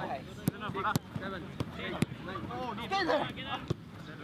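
Footballs struck by players' feet in a quick passing drill: about five sharp kicks at irregular spacing, over players' voices calling out on the pitch.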